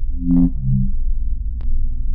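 Electronic music: a steady deep bass drone with a short run of low synth notes stepping downward in the first second, and a couple of sharp ticks.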